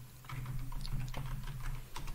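Typing on a computer keyboard: a run of soft key clicks while a password is entered, ending with a slightly sharper click near the end as Enter is pressed, over a low steady hum.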